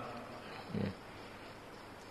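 Pause in an elderly man's talk into a microphone: faint steady hiss, with one short, low sound from his throat a little under a second in.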